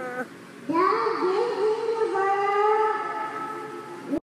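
A young girl singing solo into a microphone: a short break, then under a second in she starts a new phrase of long held notes.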